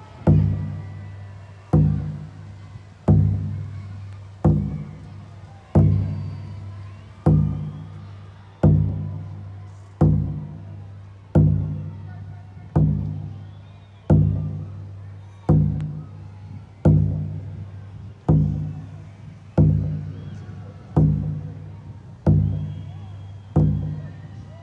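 Slow, steady drumbeat from the dance music, one deep hit about every second and a half fading out each time, over a low steady drone: an almost tribal-like pattern.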